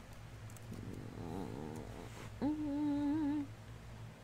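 A woman's closed-mouth hum: a soft wavering murmur, then a held, steady "hmm" lasting about a second past the middle, the sound of someone mulling something over.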